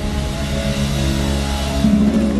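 Live band music through a PA: held chords over a sustained bass with no drumbeat, and a cymbal wash building toward the end.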